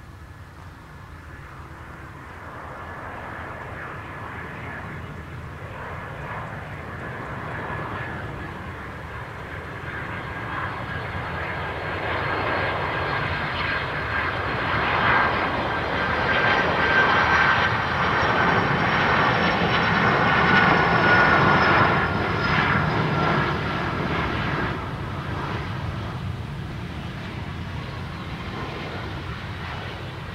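A jet airliner's engines passing by on the runway: the sound builds to a peak about two-thirds of the way through, then fades. A low rumble runs under a high engine whine that drops slightly in pitch.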